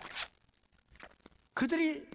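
A pause in a man's sermon: a short soft rustle just after his last word, about a second of near silence, then a voice starting again near the end.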